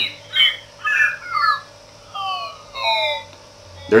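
Recorded bird calls from a circuit-bent bird song calendar sound strip, retriggered over and over by a 555 oscillator: four short bursts of whistled chirps, each made of quick falling notes, roughly one a second.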